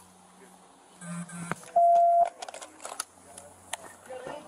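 A single steady electronic beep, about half a second long, about two seconds in and louder than anything else, with scattered clicks and knocks around it.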